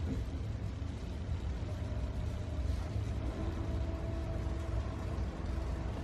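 A steady low rumble, with a faint steady hum joining about two to three seconds in.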